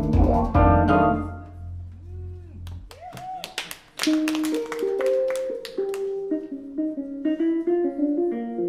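Live keyboard music: a loud chord over a deep bass note dies away over the first three seconds, a few notes bend up and down with some sharp percussive hits, and from about four seconds a keyboard melody steps along in short held notes.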